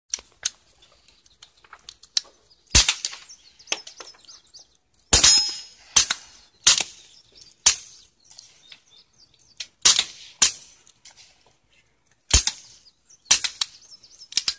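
Suppressed gunshots from several shooters firing pistols and rifles: about a dozen irregularly spaced shots, a few of them louder than the rest.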